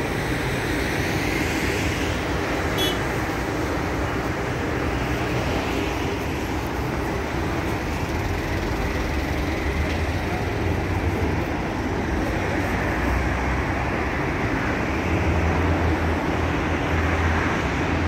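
Steady street and traffic noise with a low engine hum, swelling a little near the end.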